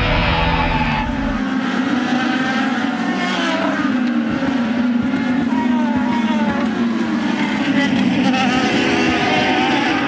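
The tail of a music sting cuts off about a second in. After it come IndyCar race cars' Honda 3.5-litre V8 engines running at speed, several cars' high engine notes passing with wavering, gliding pitch.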